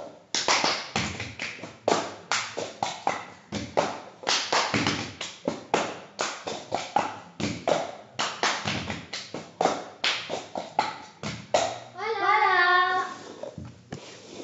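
Cup-song rhythm played by two people with plastic cups on a tiled floor: hand claps, taps and cups knocked and set down on the tiles in a quick, even, repeating pattern. It stops near the end, and a voice follows.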